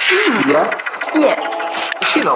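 A spoken voice sample, with its pitch bending, mixed into progressive goa trance music.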